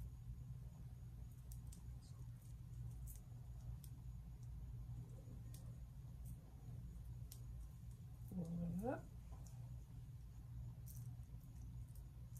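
Faint small clicks and rustles of fingers twisting pipe cleaners into locked hair, over a steady low hum. About three quarters of the way through, a short exclaimed "up" rises in pitch.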